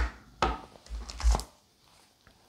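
A sharp click, then a few light knocks as hard objects are handled and set down on the honing bench, the last ones about a second in.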